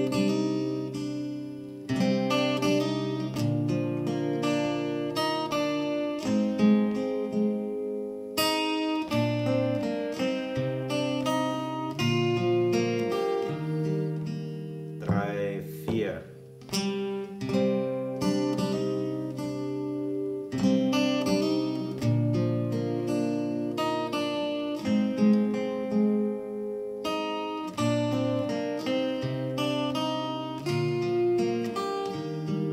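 Steel-string acoustic guitar capoed at the third fret, played fingerstyle: plucked bass notes under picked chord arpeggios, a lesson passage played through at a steady, unhurried pace.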